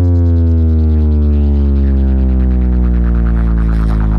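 A loud, deep electronic bass drone played through a DJ sound system's speaker boxes, its pitch sliding slowly and steadily downward.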